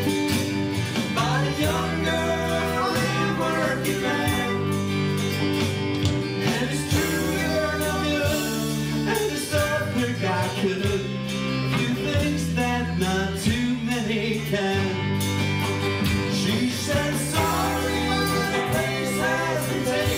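A live alt-country band playing, acoustic and electric guitars over a sustained bass line and keyboard.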